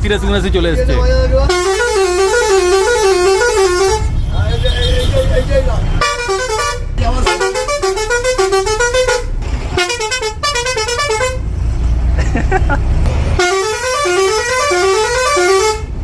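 Roots Hexatone musical air horn on a bus playing quick warbling tune patterns in three bursts, the last a run of rising steps. The bus engine runs underneath, heard in the pauses.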